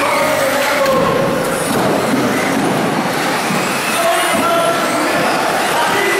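Several 1/10-scale two-wheel-drive off-road RC buggies racing, their motors whining and rising and falling in pitch as they accelerate and brake, over the echo of a large hall.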